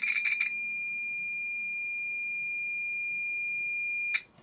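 Tenma 72-9385 digital multimeter's buzzer sounding: a rough, rattly buzz for the first half second, then a steady high-pitched beep tone held for about three and a half seconds that cuts off suddenly.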